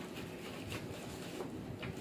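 Scissors cutting and scraping at packing tape on a paper-wrapped parcel: a few short scratchy rasps over a steady low rumble.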